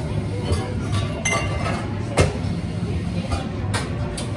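Café cups and crockery clinking at an espresso bar, with a few sharp knocks; the loudest comes about two seconds in and one rings briefly. A steady low hum of the café runs underneath.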